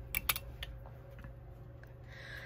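Small metal thread nippers clicking twice in quick succession, followed by a few faint ticks as the beadwork is handled.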